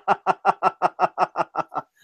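A man laughing in a long run of quick, even pulses, about six a second, tailing off and stopping just before the end.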